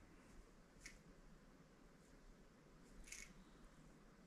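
Near silence: room tone, with two faint fabric rustles from the sock puppet being moved, one about a second in and one about three seconds in.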